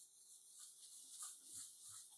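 Near silence, with faint rubbing of a paper towel wiping over a glass sheet, degreasing it with acetone.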